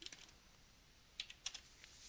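Computer keyboard keys being typed: a handful of faint, quick keystrokes, with most of them a little over a second in, as dimension values are entered.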